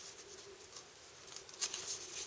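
Faint rustle of a die-cut paper tag being handled and turned over in the hands, with a few crisper paper ticks near the end.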